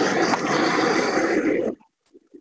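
Handheld gas torch running with a loud, steady hiss, shut off about three-quarters of the way through.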